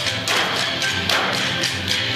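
Wooden dance sticks clacking together in a quick rhythm, over music.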